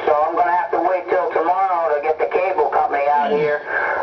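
A man's voice received over a CB radio on channel 28 (27.285 MHz) and heard through the set's speaker: the distant station talking over a long-distance skip contact.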